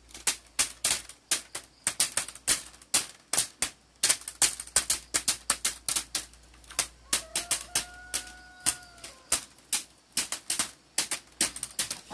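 Split bamboo strips clicking and clacking in quick, irregular runs as they are pushed and snapped into a hand-woven bamboo panel.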